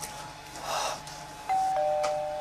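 Two-note electronic doorbell chime about a second and a half in: a higher note, then a lower one a quarter-second later, both ringing on, announcing a visitor at the front door. Shortly before it comes a brief rushing noise.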